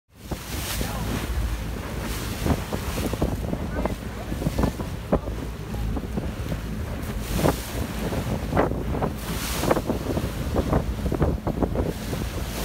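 Wind buffeting the microphone in gusts over the rush of waves and wake alongside a boat under way, with a steady low rumble of the boat's engine beneath.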